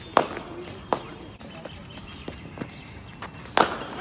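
Sharp knocks of a cricket ball and bat in practice nets: two loud knocks in the first second, a few fainter ones in between, and a louder knock with a brief ring near the end, over faint distant voices.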